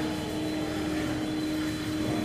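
A steady mechanical hum with one held tone.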